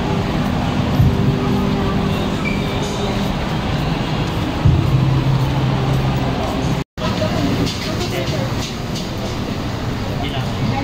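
Outdoor crowd ambience: indistinct voices of passers-by over a steady noisy rumble, broken by a brief dropout about seven seconds in.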